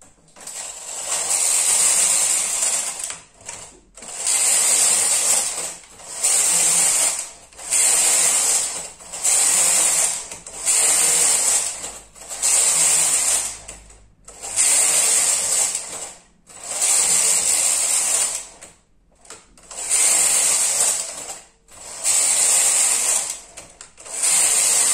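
Carriage of a Brother KH930 knitting machine pushed back and forth across the metal needle bed, about eleven passes each lasting about a second and a half with brief pauses between, as the lace pattern is knitted.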